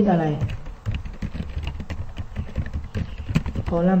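Typing on a computer keyboard: a quick, irregular run of key clicks lasting about three seconds.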